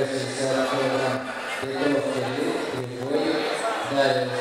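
A man's voice speaking on and off, with short pauses, and nothing else standing out.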